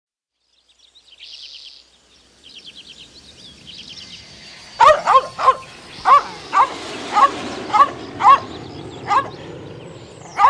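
A dog barking, a run of about nine loud barks from about halfway through, each roughly half a second apart. Before the barking, faint high chirps.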